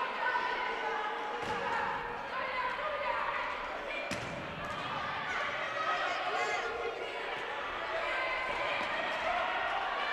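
Futsal game sounds echoing in a sports hall: players' voices calling out across the court, with sharp knocks of the ball being kicked, a little over a second in and again about four seconds in.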